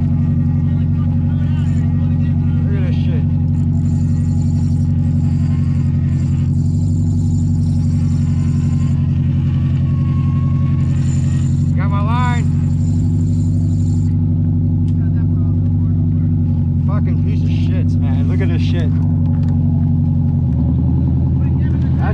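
A boat engine running close by: a loud, steady low drone at an even pitch that shifts slightly near the end, with faint voices coming through now and then.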